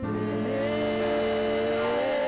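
Gospel song sung by voices over a steady instrumental accompaniment, a long held note with vibrato; a new note comes in about half a second in.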